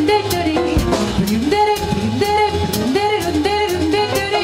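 A female jazz vocalist scat singing short, repeated, wordless phrases over a swinging big band, with upright bass and a drum kit's cymbals keeping time.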